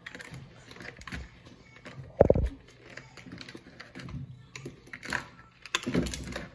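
Hands handling a small plastic toy checkout counter and register: scattered light clicks and taps, with one louder knock about two seconds in.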